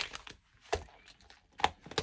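Paper cash envelopes rustling in a ring-binder cash wallet as it is shut, with a few short knocks and clicks, the sharpest near the end as the cover closes.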